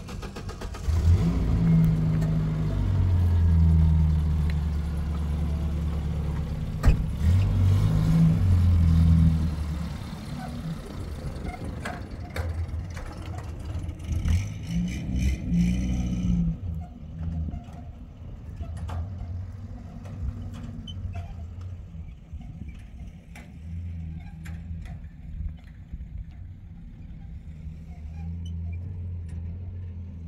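Pickup truck's engine starting about a second in, then running and revving as the truck drives off across the field, and running more quietly after about ten seconds.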